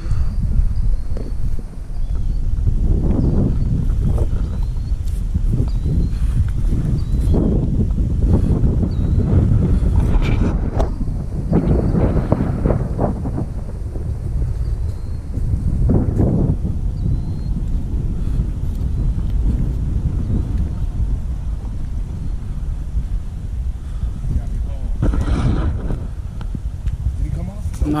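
Wind buffeting the camera's microphone: a loud, low rumble that swells and eases in uneven gusts.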